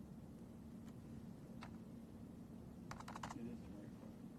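Faint computer keyboard keystrokes: two single taps, then a quick run of about five keys a little past the middle, over a steady low hum of room tone.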